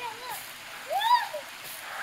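Stream water rushing below in a steady hiss, with a child's short high-pitched squeal about a second in.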